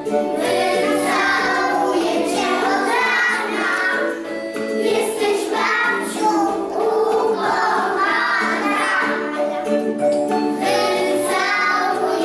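A group of young children singing a song together, with a steady instrumental accompaniment underneath.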